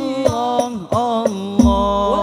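Two male voices sing an Islamic sholawat together in long, sliding melismatic lines over Al-Banjari frame drums (rebana). A deep drum stroke comes about one and a half seconds in.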